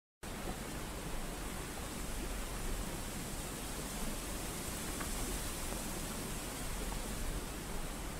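Steady, even hiss of noise with a faint low rumble underneath, starting just after the opening and cutting off suddenly at the end.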